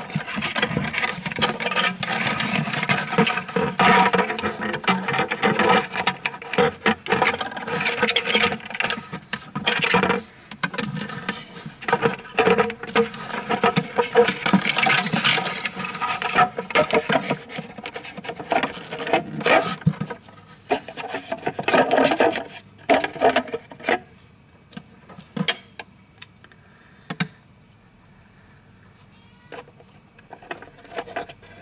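Handling noise of plastic 3D-printer parts and wiring being fitted inside a plastic enclosure: dense rubbing, scraping and clicking for about twenty seconds, thinning to scattered clicks near the end.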